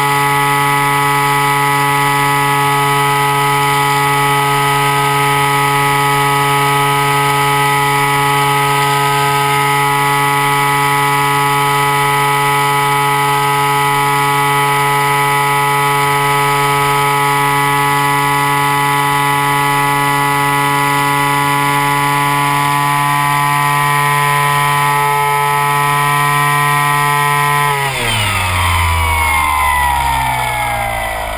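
RC model airplane's engine and propeller heard from onboard, running steadily at high throttle. About two seconds before the end the pitch falls sharply as the throttle is pulled back.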